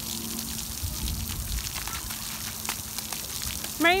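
Splash pad water spraying and pattering on wet concrete: a steady hiss, with a low rumble about a second in.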